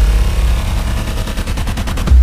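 News-show intro sound design: a deep bass drone with a fast rattle of sharp clicks, about a dozen a second, coming in halfway through as a build-up toward the logo reveal.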